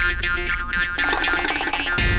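Background music score with sustained tones; the music changes about a second in.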